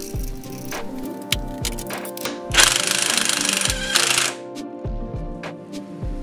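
An impact wrench hammers for about two seconds near the middle, running down the crank pulley bolt, with a few light knocks of the socket going on before it, over background music.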